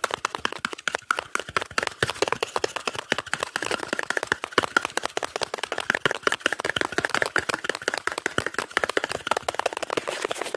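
Fast ASMR hand sounds close to the microphone: a dense, unbroken stream of quick taps, flicks and crackling rustles, many each second, made by rapid hand movements and a sheet of paper being flicked near the mic.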